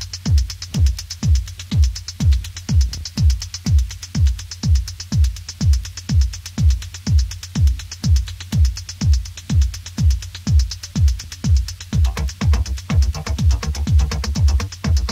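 Early-1990s rave techno: a four-on-the-floor kick drum, each hit dropping in pitch, about twice a second under a ticking hi-hat. About twelve seconds in, a denser bass and synth layer joins.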